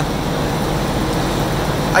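Steady mechanical hum with an even noisy hiss over it, from machinery running in the dyno shop.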